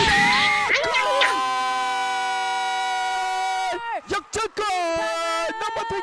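Sports commentator shouting a long, drawn-out goal call held on one pitch for nearly three seconds and dropping away at the end, then launching into a second long held call about five seconds in.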